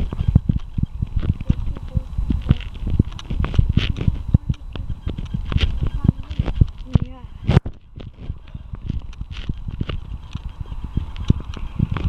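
Irregular knocks and thuds from walking along a wet pavement, with handling noise from the hand-held camera. A short muffled voice comes in about seven seconds in.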